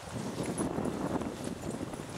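A dog splashing as it wades through shallow pond water, a run of irregular splashes and sloshes that fades near the end.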